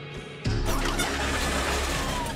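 A sudden loud rumbling sound effect about half a second in, with a rushing noise and sweeping tones that slowly fall away, over the background score.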